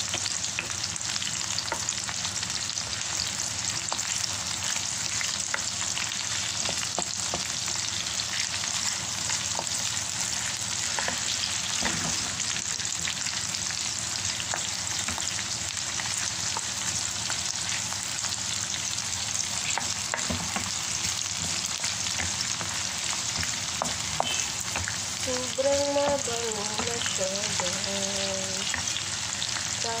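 Sliced garlic and onion frying in hot oil in a black skillet: a steady sizzle dotted with small crackles, with a wooden spoon stirring through it now and then.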